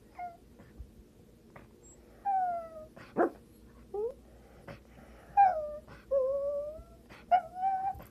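Miniature Pinscher whining in a string of about seven short, pitched whines, some sliding down and some sliding up in pitch.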